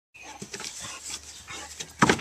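Dog digging in a sandpit: faint, irregular scuffling and scratching as its paws and nose work the loose sand.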